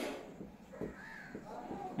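Faint squeak and scrape of a marker writing on a whiteboard, with a short squeak about halfway through.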